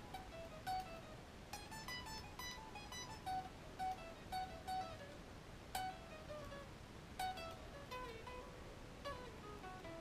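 Ibanez electric guitar playing a blues-rock riff in Drop D tuning: single picked notes, the line stepping gradually down in pitch across the phrase.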